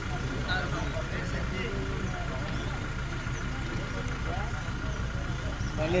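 Indistinct chatter of an outdoor crowd, several people talking at once, over a steady low hum.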